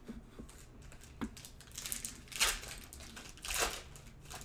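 Sealed foil trading-card packs being handled and picked up: soft crinkling, a faint click about a second in, and two short, louder rustles near the middle and near the end.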